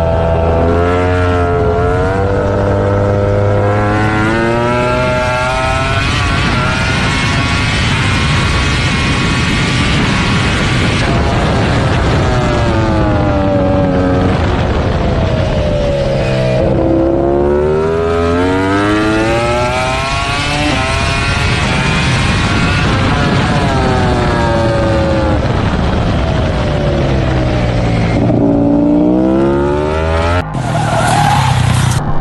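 Onboard sound of a Ducati Desmosedici MotoGP V4 engine at racing speed, its pitch climbing in steps through upshifts. It drops sharply twice under braking with downshifts, about halfway and near the end, then climbs again out of the corner.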